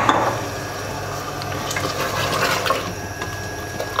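Water poured from a cup into an aluminium pressure cooker pot of curry, splashing onto the meat and bottle gourd, after a sharp knock at the very start.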